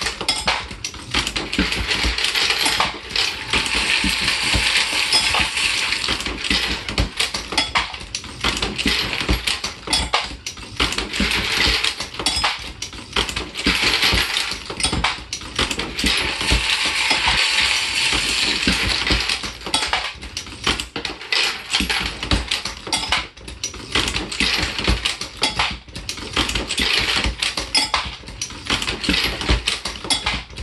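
Continuous metallic clatter and clinking of bullets in a motor-driven 3D-printed bullet feeder while a progressive reloading press is cycled.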